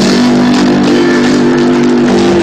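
Live country band holding the final chord of the song, with guitar. The chord sounds as a steady, sustained tone.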